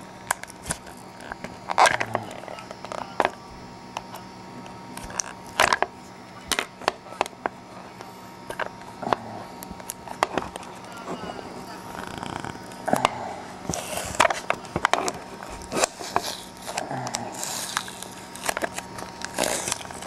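Clear hard plastic packaging being pried and cracked open with a pen tip and fingers: irregular sharp clicks and crackles, with bursts of plastic crinkling. A television plays faintly in the background.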